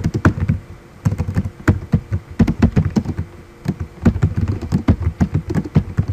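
Typing on a computer keyboard: a quick, uneven run of key clicks with a couple of short pauses, as a folder name is typed out.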